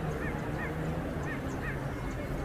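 Four short, high, squeaky honking calls in quick succession over a steady background murmur.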